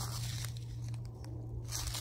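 Faint rustling and crinkling of seed packets being handled, over a steady low hum.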